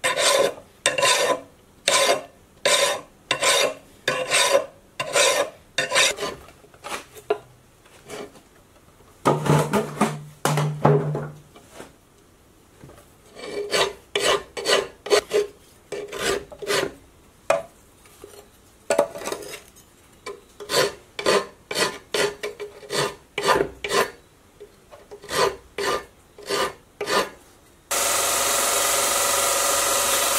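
Hand file scraping across a forged steel axe head held in a vise, in repeated push strokes about two a second, with a couple of short pauses. Near the end an electric belt sander takes over, running with a steady grinding hiss.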